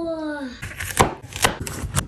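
A brief falling tone, then a cleaver chopping through ginger root onto a wooden cutting board: several sharp chops, about two a second.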